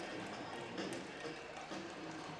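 Faint ice hockey arena ambience: a low, steady murmur of crowd voices.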